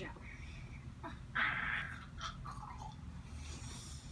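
Folding camp chair being handled and opened: fabric rustling and the frame shifting, with one louder rustle about a second and a half in, over a steady low hum.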